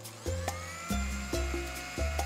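Electric mixer-grinder motor whining as it blends a paste in a steel jar, rising in pitch for about the first second as it spins up, then holding steady. Background music with a plucked melody and bass plays over it.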